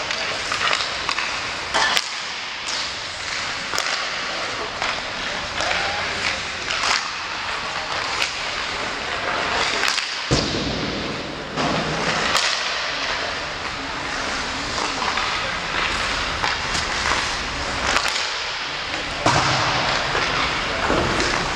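Ice hockey warmup on an indoor rink: steady scraping of skates on the ice with frequent sharp cracks of pucks struck by sticks and hitting the boards. A low rumble comes in about halfway through.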